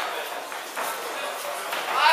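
Ringside voices shouting and calling out in a large hall, louder again near the end.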